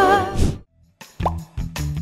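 A held sung note dies away, then after a short silence a quick rising pop and a few sharp clicks from a cartoon-style transition sound effect.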